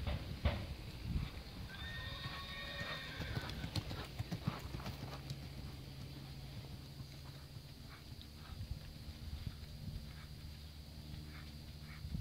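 Horse's hoofbeats on soft arena dirt, with a whinny of about a second and a half starting about two seconds in.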